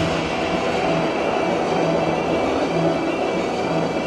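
Arena goal-celebration music over the PA, a dense wash of sound with a low bass note pulsing about once every three-quarters of a second.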